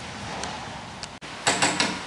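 A steady background hiss, then a quick run of four or five sharp clicks or knocks near the end.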